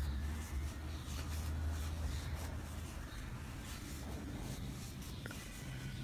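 Faint scratchy rustling of a metal crochet hook pulling white yarn through stitches, with small ticks as the hook works, over a low hum that weakens about halfway through.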